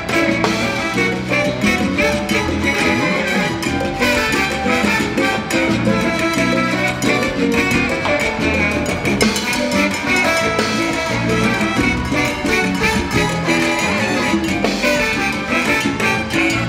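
Live salsa band playing an instrumental passage, with saxophone, timbales and drum kit over a steady, driving rhythm.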